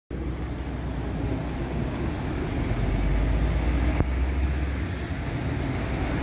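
Steady rumble of road traffic on a wet street, with a single sharp click about four seconds in.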